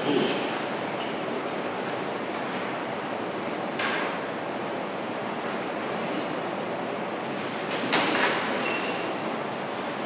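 Steady room noise hiss, with two brief rustles about four seconds in and again near eight seconds, typical of papers being handled.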